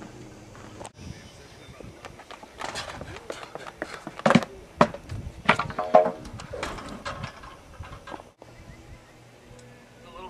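Sounds of a pole vault attempt: scattered thuds and knocks, two sharp ones near the middle, with voices calling out just after.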